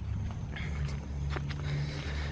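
A few soft footsteps on a brick-paver driveway over a low, steady rumble.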